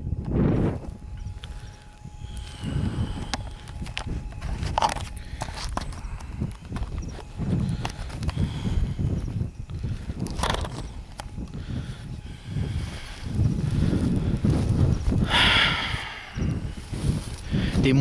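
Wind buffeting the camera microphone in uneven low gusts, with footsteps through grass and small handling knocks as the camera is carried.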